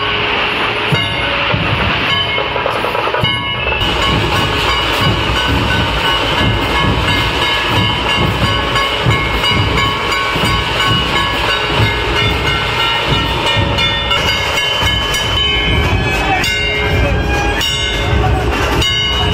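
Dhol-tasha drum troupe playing loud, dense, fast drumming on large barrel drums, with a steady ringing din above the beats.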